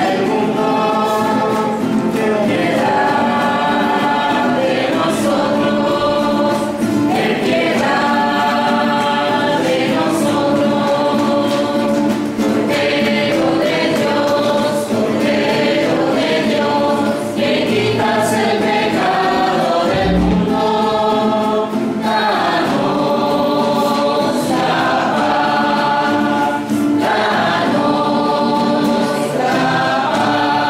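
Church choir singing a hymn of the Mass, phrase after phrase without a break.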